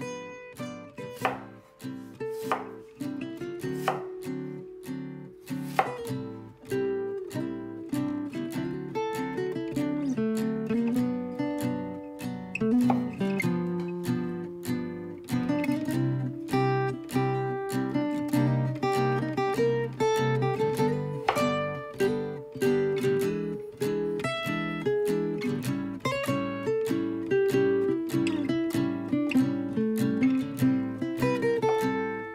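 Background acoustic guitar music, with a santoku knife chopping on a bamboo cutting board at times underneath it.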